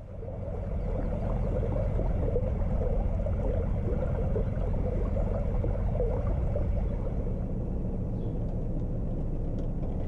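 Narrowboat engine running steadily while the boat cruises along the canal, a continuous low rumble that fades in over the first second.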